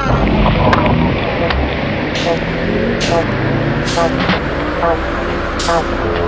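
Electronic bass music in a sparse passage: a low rumbling drone under short hissing noise hits that come about once a second, with small pitched blips scattered between them.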